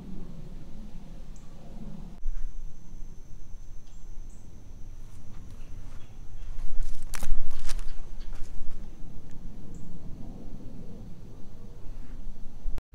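Footsteps walking over the forest floor, with a cluster of louder crackling steps about seven seconds in. A thin, steady high tone runs behind them for most of the time.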